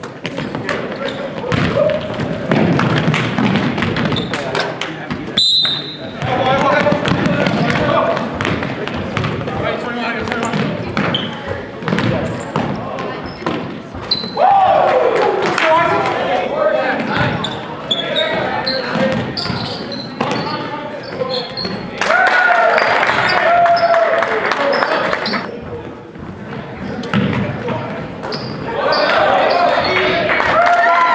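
Basketball bouncing on a hardwood gym floor during play, with repeated knocks from dribbles and footfalls and voices calling out across the gym.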